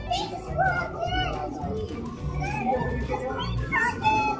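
Indistinct children's voices and chatter over background music.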